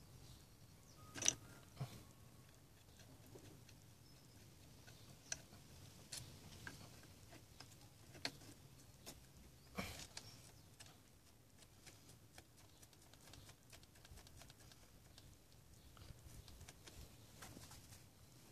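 Faint, scattered metallic clicks and taps of a hex key and gear-shift linkage parts as the gear lever's clamp bolt is fitted and turned by hand; otherwise near silence. The loudest click comes about a second in, another near ten seconds.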